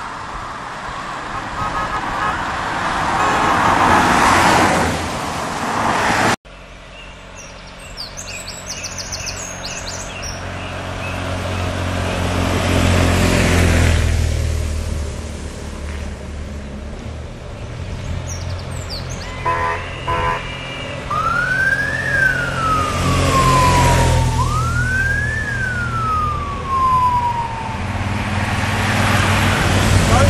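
Race convoy cars and motorcycles driving past on a narrow road, their engines swelling and fading as they go by. About two-thirds through, a siren gives a short steady blast, then wails up and down twice.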